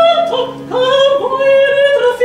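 Soprano singing a baroque vocal line with cello and harpsichord accompaniment, moving through several held notes sung with vibrato.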